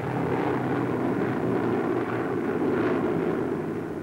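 Engines of four-engine propeller bombers droning steadily in flight.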